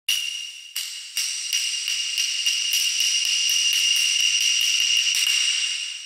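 Intro sound effect: a high ringing struck tone, the strikes coming faster and faster until they merge into a continuous roll, which fades out near the end.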